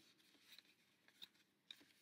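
Near silence, with a few faint soft ticks of paper and card being handled as a small insert is moved about on a scrapbook page.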